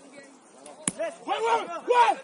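A single sharp thud of a football being kicked just under a second in, followed by players shouting loud calls across the pitch.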